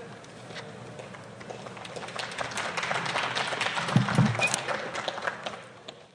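Audience applauding, building up about two seconds in and dying away near the end.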